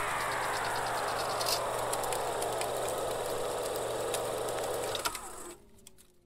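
Electric guitar amplifier noise left ringing after the song's final chord: a steady hum and hiss with a slow, falling whine, fading out and cutting off about five and a half seconds in.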